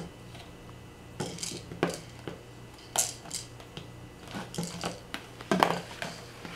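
Plastic stacking rings rattling and knocking inside a clear plastic bin as it is handled and set down, a string of irregular sharp clacks.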